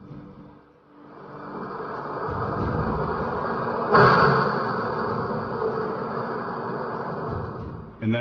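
Dramatic soundtrack effect: a rumbling swell that builds, a sudden hit about four seconds in, then a sustained drone that cuts off near the end.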